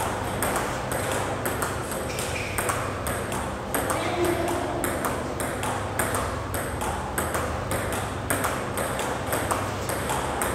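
Table tennis rally: the celluloid-type ball clicking off rubber bats and bouncing on the STAG table top in a quick, even rhythm, a few hits a second, over a steady low hum.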